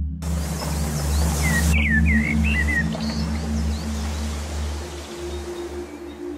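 Ambient background music with a steady low drone, overlaid with a hiss of outdoor ambience that cuts in suddenly at the start and a few short high chirps in the first half.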